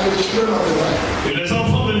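A man's voice speaking into a microphone, amplified over loudspeakers, with a short pause about one and a half seconds in.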